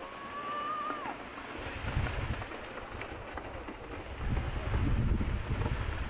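Wind buffeting the microphone over the wash of the sea, with low gusts swelling about two seconds in and again in the last part. A brief thin steady tone sounds in the first second and drops away at its end.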